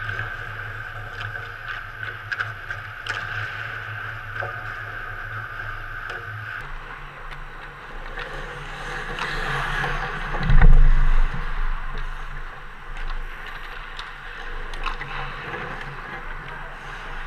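Ice hockey rink sounds heard close to a goal net: skate blades scraping on the ice and sharp clicks of sticks and puck. About ten and a half seconds in there is one loud, deep thump. The background changes abruptly about six and a half seconds in.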